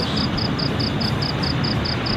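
Steady rushing background noise, with a high-pitched chirp repeating evenly about five times a second.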